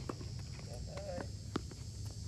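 Tennis rally on a hard court: a few sharp knocks of ball strikes and bounces, the strongest about one and a half seconds in, with shoe steps on the court over a steady low rumble. A brief wavering tone sounds near the middle.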